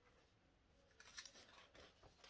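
Near silence, with a few faint, brief rustles about a second in as a cotton fabric panel with a zipper is handled.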